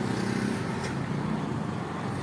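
Steady road traffic noise: a continuous hum of vehicles passing on the road.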